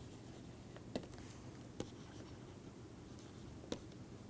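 Stylus writing on a tablet screen: faint scratching strokes with four short, sharp taps of the pen tip over a low background hiss.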